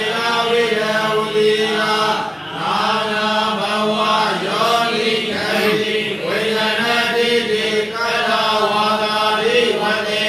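A Buddhist monk's voice chanting a Pali scripture passage in a steady, drawn-out recitation tone, with a short breath pause about two seconds in.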